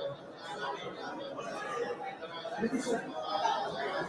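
Several men's voices talking over one another in a hall, an indistinct murmur of chatter with no single clear speaker.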